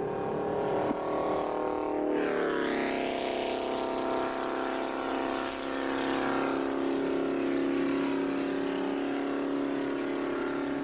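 Ferrari Berlinetta Boxer flat-twelve engines running hard at racing speed. About two seconds in, the engine note falls sharply in pitch, then runs at a steady high pitch.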